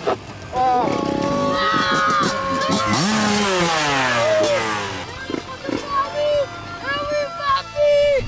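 Music with sung vocals playing over a Yamaha YZ125 two-stroke motocross bike's engine revving, its pitch sweeping down and up. The engine is loudest about three to four seconds in.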